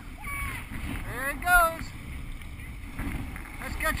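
Small surf washing up a sandy beach, with wind on the microphone. A person's voice calls out briefly several times; the loudest call comes about a second and a half in.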